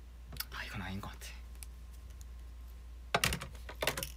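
Brief murmured vocal sound about half a second in, then a quick cluster of clicks and handling noise near the end as a pair of glasses is taken off and swapped, over a steady low hum.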